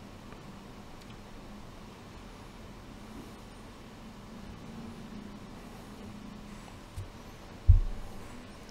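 Quiet room tone with a faint low hum, then a short dull low thump near the end.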